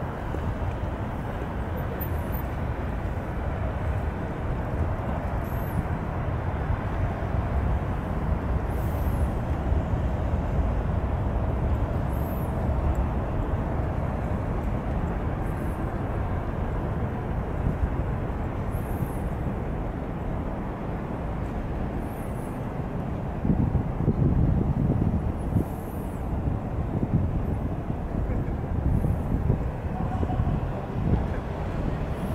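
Steady low rumble of distant city traffic, with a louder low surge about three-quarters of the way through.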